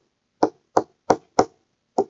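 Stylus tapping on a tablet screen during handwriting: five short, sharp clicks roughly a third of a second apart.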